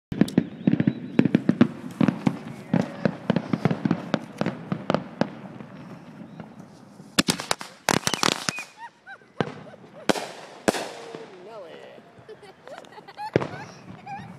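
A bundle of small firecrackers going off in a rapid string of pops for about five seconds, followed by a few scattered single bangs a second or more apart.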